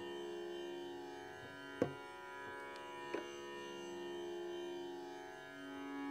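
Harmonium holding a steady sustained chord, with two brief light taps about two and three seconds in.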